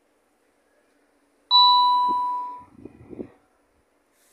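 A single bell-like ding about a second and a half in, a clear ringing tone that starts sharply and fades away over about a second, followed by a few soft low knocks.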